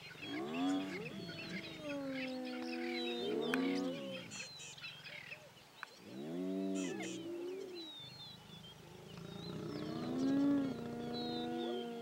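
Spotted hyenas calling at a lion: a series of drawn-out groans and lows, several overlapping, some arching up and down in pitch, with longer held low tones near the end. Birds chirp throughout in the background.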